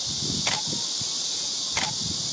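A steady high-pitched hiss runs throughout, with low rumbling under it. Two sharp clicks come about half a second in and near the end, a little over a second apart.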